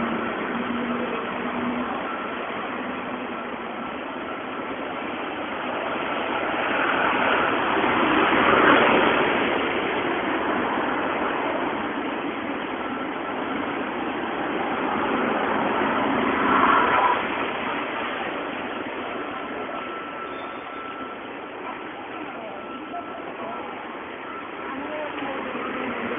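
City street traffic: a steady wash of cars passing on the road, with two louder swells as vehicles go by, about a third of the way in and again about two-thirds through.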